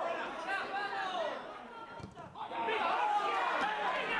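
Several people shouting and talking over one another, unintelligible, with a short break about halfway through.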